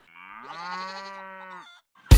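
A single long, low animal call with many overtones, rising in pitch at the start and then held steady for about a second and a half before stopping abruptly.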